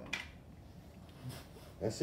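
Two short, breathy bursts from a person, one just after the start and another about a second later, over low room tone; a man starts to speak near the end.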